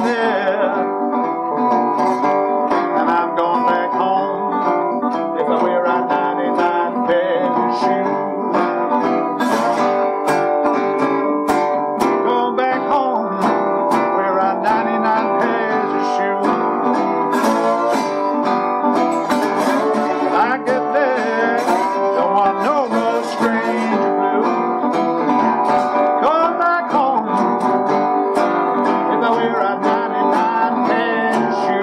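National tricone resonator guitar playing an instrumental blues break, steady picked notes with some gliding notes.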